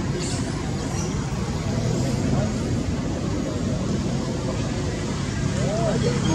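Indistinct voices of people talking in the background over a steady low rumble, with a short rising-and-falling call near the end.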